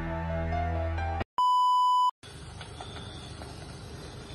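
Background music with sustained notes cuts off, then a steady electronic beep tone sounds for under a second. After it comes faint ambience with a faint high chirping that comes and goes, like crickets.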